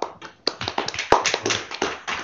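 Light, scattered applause from a small audience: a handful of people clapping at an uneven rate.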